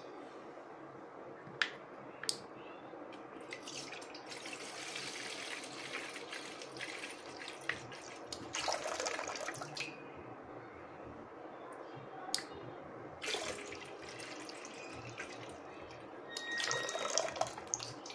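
Water pouring and splashing into a stainless steel pot from a small pump's plastic outlet tube, a steady splash that swells louder several times. Two sharp clicks come about two seconds in.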